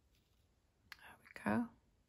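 Near silence, then a brief soft noise and a woman saying "There we go" quietly, about halfway through.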